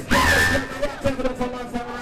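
A voice calling out in a long, held cry about the first second, over club music and crowd chatter.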